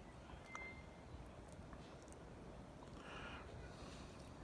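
Near silence: faint outdoor background with one short, high, steady chirp about half a second in, and a few faint ticks.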